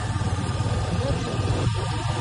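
Engine of a moving vehicle running steadily, with a constant low rumble under road and wind noise.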